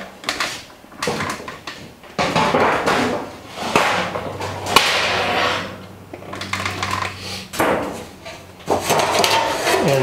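A thin sheet metal panel being handled and shifted in a hand-operated sheet metal bender: irregular scraping, rattling and flexing of the sheet, with a sharp metallic click about five seconds in.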